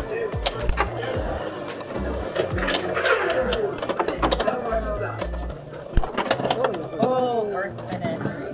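Beyblade X tops, HellsScythe 9-60 Ball and SharkEdge 3-60 Flat, spinning and clashing in a plastic stadium, with a rapid run of sharp clicks. A loud hit about six seconds in fits the hit that bursts one top apart for a burst finish. Background music and voices run underneath.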